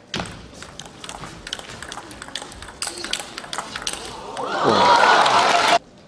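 Table tennis rally: the celluloid ball clicks off rackets and table in quick succession for about four seconds, then loud shouting and cheering swell up as the point ends and cut off suddenly near the end.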